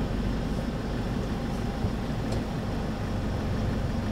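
Engine of a manual-transmission Kia light truck running at low revs, a steady low rumble heard inside the cab, while the learner brings the clutch up toward the half-clutch point for a hill start.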